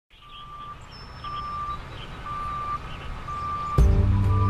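Vehicle reversing alarm beeping four times, about once a second, over a low truck engine rumble that fades in and grows louder. Music starts abruptly just before the end.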